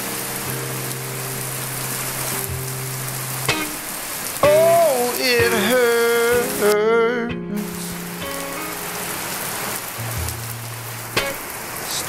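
Steady hiss of heavy rain with a song over it: held low instrumental notes throughout, and a sung phrase from about four and a half seconds in that is the loudest part.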